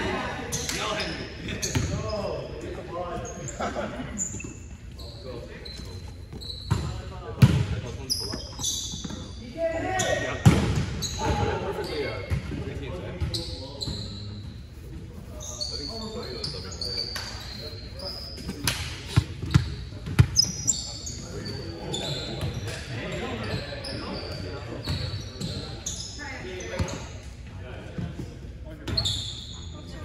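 Indoor volleyball play in a large, echoing gym: a volleyball being struck and bouncing on the hardwood floor with sharp, irregular impacts, short high sneaker squeaks, and indistinct players' voices calling and chatting.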